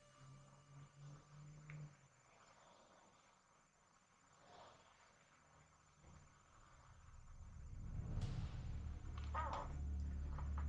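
A small dog snoring faintly. About eight seconds in there is a click, and a low rumble grows louder over the last few seconds.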